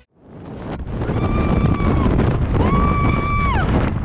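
Wind rushing over the microphone in freefall, building over the first second, with two long, high, held yells from a person, each lasting about a second.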